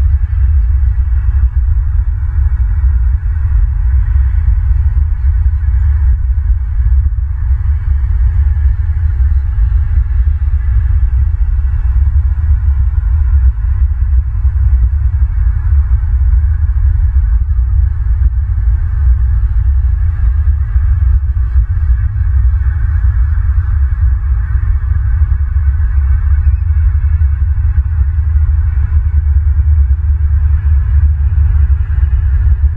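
Steady low rumbling of wind buffeting an outdoor camera microphone, with a fainter hiss higher up.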